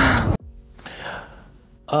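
A woman's voice breaks off abruptly. A soft breath follows in a quiet room, and then a man starts to speak, drawing out his first word.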